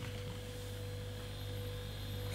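A steady, low electrical hum with a faint higher tone and a light hiss underneath, unchanging throughout.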